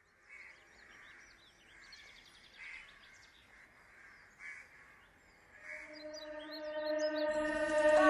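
Birds chirping over faint outdoor ambience. From about six seconds in, a sustained musical chord fades in and grows steadily louder, leading into the song.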